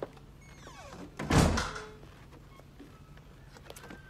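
A short falling squeak, then a heavy thump about a second and a half in, followed by a few faint knocks.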